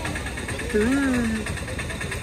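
An engine idling steadily, with a short voiced sound from a person about a second in.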